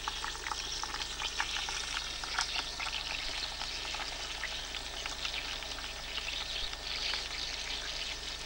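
Chicken pieces frying in oil in a frying pan: a steady sizzle with many small crackles and spits.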